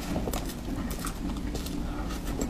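Close-miked mouth sounds of chewing soft whipped-cream cake, with wet clicks and smacks, while a spoon scoops through the cake.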